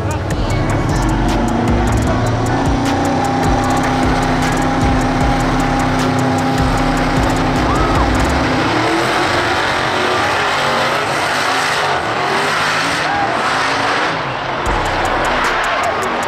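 Drag-racing car held at the starting line with a steady engine note, then launching and running down the strip about eight or nine seconds in. Music and crowd voices run underneath.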